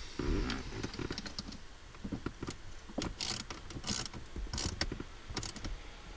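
Metal parts of a short-throw shifter assembly being handled by hand: scattered small clicks and light clatter of the bracket and fasteners, with a run of clicks in the second half.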